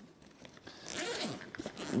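A backpack zipper being pulled, a scraping run of about a second starting about halfway through.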